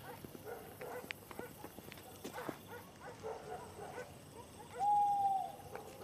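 A single clear, steady hoot lasting nearly a second, like an owl's call, about five seconds in. It sits over faint night sounds made of scattered small clicks and rustles.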